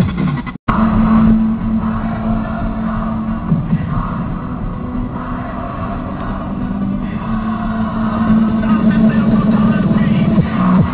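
Steady engine drone and road noise heard inside the cabin of a moving Škoda Felicia, with a brief break in the sound about half a second in.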